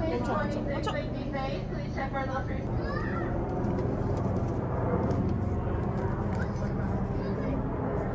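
Outdoor background of indistinct voices over a steady low mechanical hum. The voices fade out about three seconds in, leaving the hum.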